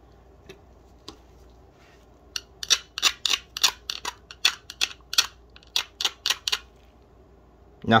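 A pointed metal pick scraping and clicking against epoxy-coated beadwork, about a dozen quick irregular strokes over some four seconds, starting a couple of seconds in. The beads hold fast under the hardened epoxy coat.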